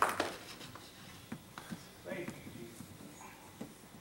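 Faint, indistinct voices and small rustling noises in a quiet hall, with the tail of applause fading out at the very start.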